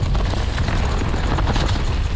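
Downhill mountain bike descending a dirt forest trail: a steady, heavy wind rumble on the GoPro's microphone, the rolling noise of knobby tyres on dirt, and a run of small clicks and clatters from the bike over bumps.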